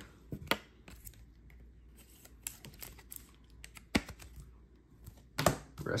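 Scattered light clicks and rustles of trading cards, a plastic card holder and foil card packs being handled on a tabletop, with the sharpest click about four seconds in.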